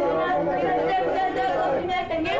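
Many people's voices sounding at once, overlapping and continuous without pauses.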